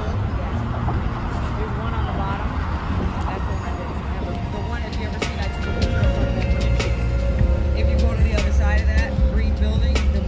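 Outdoor city ambience: a steady low rumble with faint voices in the first few seconds. From about five seconds in, music with long held notes comes in and the rumble grows louder.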